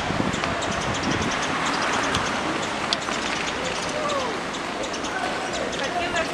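Busy street ambience: a steady wash of outdoor noise with indistinct voices of people nearby, a few voice fragments rising out of it about two-thirds of the way through.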